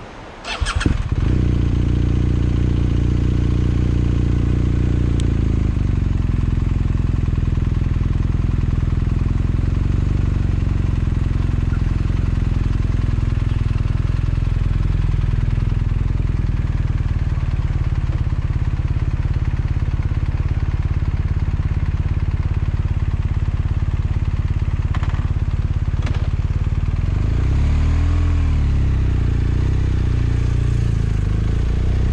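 Motorcycle engine starting about a second in, then idling steadily, its pitch wavering briefly near the end.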